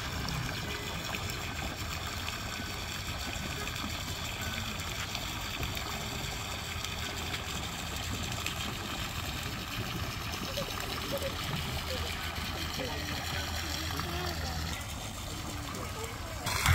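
Water splashing and trickling steadily into a small concrete pond from an inflow jet.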